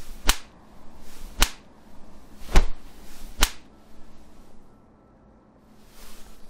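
Cartoon fight sound effects: four sharp slap-like hits, about a second apart, the third the loudest.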